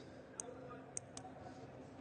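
Quiet room tone with three faint, short clicks, two close together near the middle.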